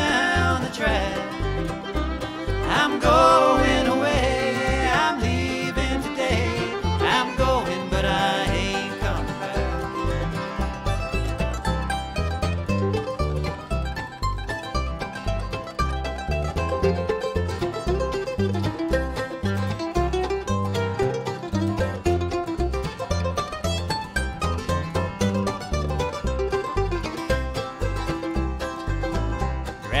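Bluegrass string band playing an instrumental break between sung verses: mandolin, flat-top acoustic guitar, fiddle and upright bass, with the bass keeping a steady beat.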